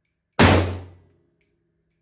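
A single shot from a Micro Draco AK pistol in 7.62x39mm, about half a second in, its report echoing in the concrete indoor range and dying away within about a second.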